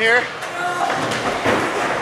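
A man's voice ending a word, then quieter background voices and the general noise of a large indoor room.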